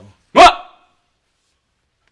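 A single short, sharp, loud cry, bark-like, about a third of a second in.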